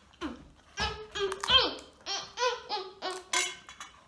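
Wordless vocalizing in about eight short sing-song bursts with sliding pitch, babbling rather than clear words, from a girl and a woman.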